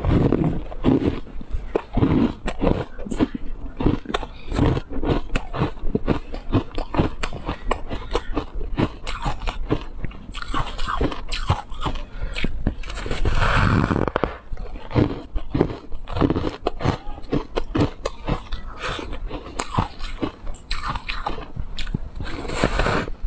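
Close-miked biting and chewing of a chunk of refrozen shaved ice: dense, rapid crunches throughout, with louder bites at the start and about two-thirds of the way through.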